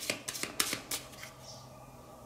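Tarot cards being handled as a card is drawn from the deck: a quick run of five or six light card clicks and snaps over the first second.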